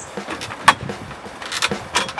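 Metal knocks and clinks from aluminium tent extension poles and the aluminium ladder being handled and climbed: one sharp knock a little under a second in, then a few lighter clicks near the end.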